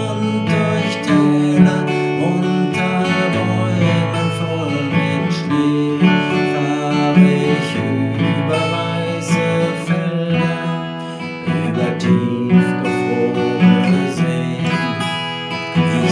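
Acoustic guitar, capoed at the second fret, strummed in a steady rhythm, playing the chord accompaniment of a children's song.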